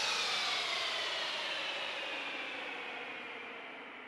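The closing downward sweep of a hardstyle track: a hiss with several tones gliding slowly down in pitch, fading steadily, with no beat or bass.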